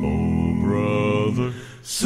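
Male gospel vocal quartet singing held, wordless chords in close harmony. The upper notes move up about half a second in, and the sound fades briefly near the end before the next chord comes in.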